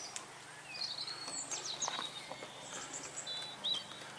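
Small birds chirping and singing faintly, a scatter of short high whistles and quick falling chirps over quiet outdoor background noise.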